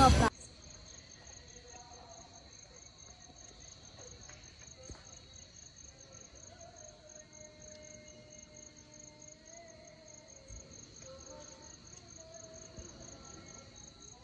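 Crickets chirping at night: a faint, steady high trill with a rapid, evenly spaced pulsing chirp over it.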